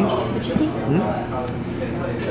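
Indistinct voices talking, with no other distinct sound.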